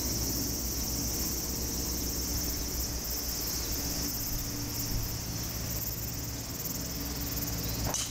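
A steady, shrill chorus of insects buzzing, with a low rumble underneath. Just before the end comes one sharp click: a driver striking a golf ball off the tee.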